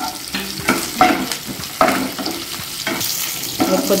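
Tempering spices, green and dried red chillies, garlic and curry leaves, sizzling as they fry in a nonstick frying pan. They are stirred with a spatula that scrapes and knocks against the pan several times.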